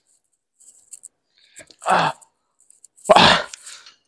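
A man's effortful vocal sounds while heaving at a heavy engine: a short 'ah' about two seconds in, then a louder strained grunt about three seconds in. Faint small clicks and knocks come before.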